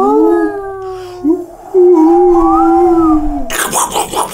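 Long, wavering howls, two overlapping at first and then one drawn-out howl, in a spooky segment sting. A burst of rushing noise comes in near the end.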